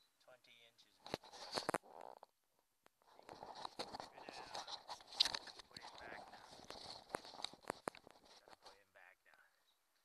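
Handling noises in a small boat as a cloth tape measure is gathered up and the angler shifts about on the floor. A few sharp knocks come about a second in, then a denser stretch of rustling and clicks from about three to eight seconds.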